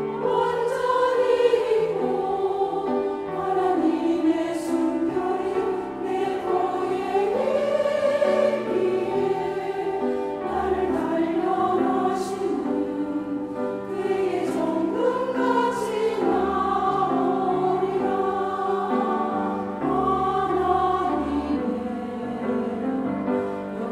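Women's church choir singing a slow hymn in sustained, held notes, over low steady accompaniment notes.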